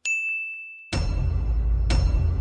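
A bell-like ding sound effect strikes and rings out, fading over about a second. About a second in, a louder, fuller steady sound takes over, and a second ding strikes near the end. The dings mark wins being counted.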